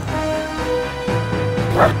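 Background music with long held notes. Near the end comes one short, sharp cry.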